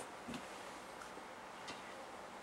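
Quiet room tone: a faint steady hiss and low hum, with a soft knock shortly after the start and a faint tick near the end.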